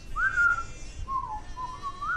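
A person whistling a short tune: a few notes that slide up and down, the first and last a little higher than those in the middle.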